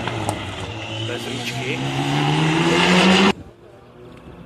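Mitsubishi Lancer Evolution rally car's turbocharged four-cylinder engine accelerating hard in one long pull, its pitch rising steadily as it gets louder, with a few sharp pops at the start. The sound cuts off suddenly about three seconds in.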